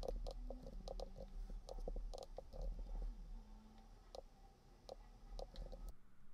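Faint computer keyboard typing and mouse clicks: a run of irregular short key clicks over a steady low hum.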